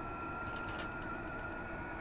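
A steady high tone with a slight wobble about a second in: the calibrated signal generator's weak carrier picked up by a Softrock Ensemble II software defined receiver and heard as an audio tone. A couple of faint clicks come from the generator's knobs being turned.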